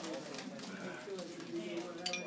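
Many people talking at once in a room: an indistinct murmur of overlapping conversation.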